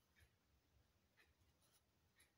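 Very faint graphite pencil strokes on paper along a ruler's edge: a few short, soft scratches in near silence.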